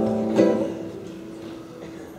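Acoustic guitar playing the closing chords of a song: strummed at the start and again about half a second in, then left to ring out and fade.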